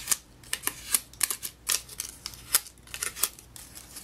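Cardstock paper flower being handled, its snipped petals bent and curled inward: an irregular run of small paper crackles and clicks.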